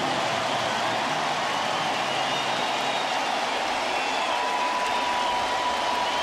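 Ballpark crowd cheering and applauding steadily after a home run, a dense even roar of many voices and claps. A thin held tone, like a single whistle or voice, rises out of the crowd about four seconds in.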